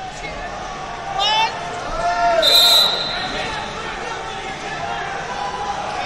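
Shouting voices in a large sports hall, and about two and a half seconds in a short, high referee's whistle as the first-period clock runs out.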